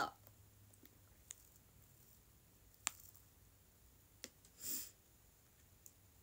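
A drink sipped through a straw: mostly quiet, with a few small, sharp clicks and one short, breathy suck about three-quarters of the way through.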